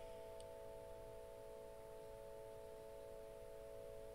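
Faint, steady held chord of several pure tones that neither swells nor fades, like a soft ambient music drone.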